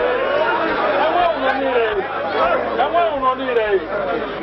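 Speech: a man talking into a handheld microphone, with other voices chattering alongside.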